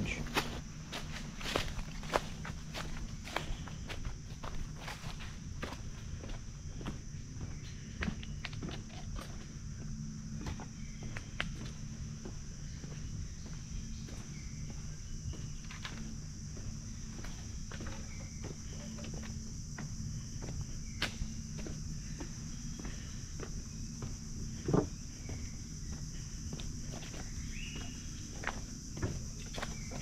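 Footsteps crunching irregularly on a dirt and stone jungle trail, over a steady high-pitched buzz of insects.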